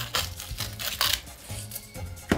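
Light background music under a few short crunching strokes of a salt mill grinding sea salt.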